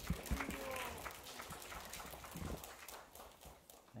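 A room full of people shifting and bowing down onto the floor: scattered, irregular knocks and thumps of knees, hands and bodies, with low murmured voices.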